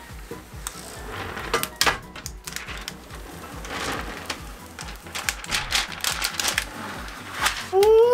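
Clear protective plastic film being peeled off a 3D printer's build plate, crackling in a run of sharp ticks that come thickest near the end. Background music with a steady beat plays underneath.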